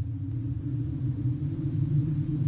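Low, steady ambient rumble on the soundtrack, with a faint hiss above it.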